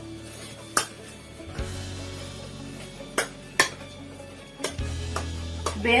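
A spoon working a thick bean and potato paste in an enamel pot, with about five sharp clacks of the spoon knocking against the pot's side, over quiet background music.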